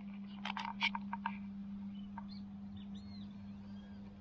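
Birds calling: a quick run of sharp chirps in the first second or so, then thin rising-and-falling chirps later on, over a steady low hum.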